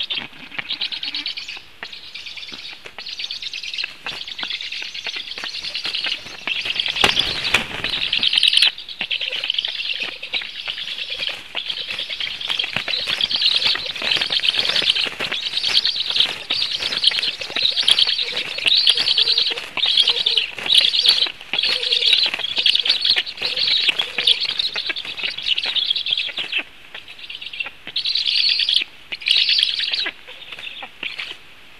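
Black stork nestlings giving high, buzzy begging calls in repeated bursts about once a second while being fed at the nest. A loud burst of wing flapping comes about seven seconds in.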